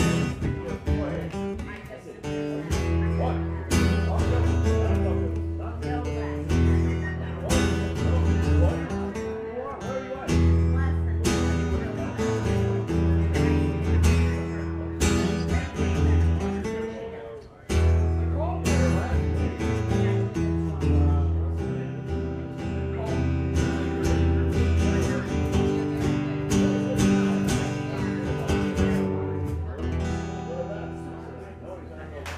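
Amplified acoustic-electric guitar strummed and picked in a steady, rhythmic instrumental passage with deep, ringing bass notes. The playing dips briefly a little past halfway, then comes straight back in, and starts to fade near the end.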